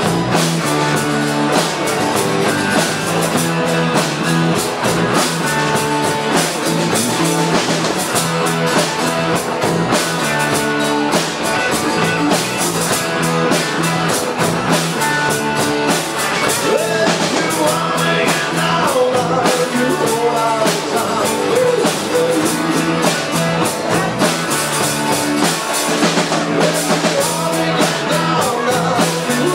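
Live rock band playing at full volume: drum kit, electric and acoustic guitars and bass guitar. A lead vocal comes in about sixteen seconds in.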